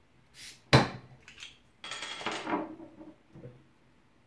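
A bottle of export beer being opened and poured: a short hiss, then a sharp crack of the crown cap coming off under the opener, then beer running into a glass and foaming up.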